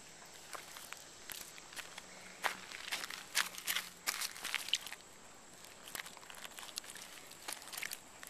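Footsteps crunching on loose gravel and pebbles, an irregular run of crunches that is busiest through the middle of the stretch.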